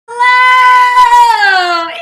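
A woman's voice holding one long, high sung note, steady for about a second, then sliding down in pitch as it fades.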